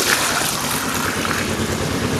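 Fresh milk poured in a thick stream from an aluminium pail into a plastic measuring jug: a steady splashing gush as the jug fills.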